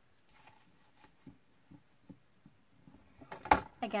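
Soft rustling and light taps of paper and card being handled on a craft table. About three and a half seconds in there is a single sharp knock, then a word of speech.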